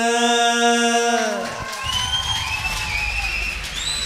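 A man singing into a microphone holds a long final note that stops about a second and a half in. An audience then breaks into applause and cheering, with whistles.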